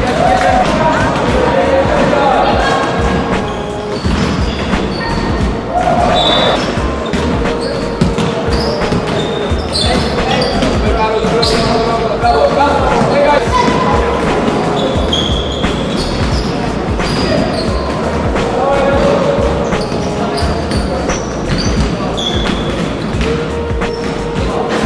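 Basketball game sounds in a large sports hall: the ball bouncing on the floor, sneakers squeaking in short high chirps, and players calling out.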